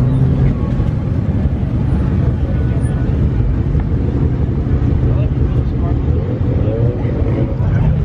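A car engine running at a low, steady rumble as a red Ford Mustang drives slowly past close by, with voices faint behind it.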